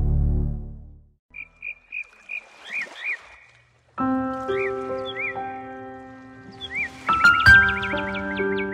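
A music jingle fades out in the first second, followed by a series of short chirping animal calls, like a nature-sounds effect. About four seconds in, soft sustained keyboard chords begin, with the chirps repeating over them.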